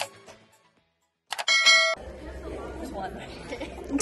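Intro music fading out, a moment of silence, then a short chime-like tone. After that comes a low background of people chattering in a large room.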